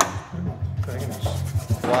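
Hand rubbing and scrubbing as grimy pinball machine parts are cleaned.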